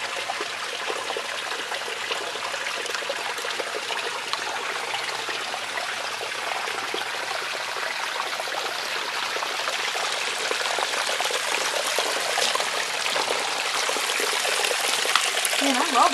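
Shallow creek water running and trickling over a gravel and rock bed: a steady rushing sound that grows a little louder toward the end.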